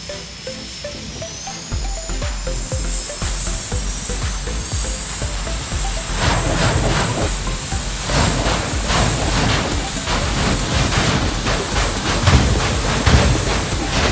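Jet-powered drag car's turbine engine running at the start line: a high whine rising in pitch over the first few seconds, then from about six seconds in a louder, rough crackling run-up.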